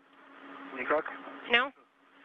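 Space-to-ground radio loop: a hiss of static that swells over about a second and a half, with a steady low hum under it, broken by two short bursts of speech.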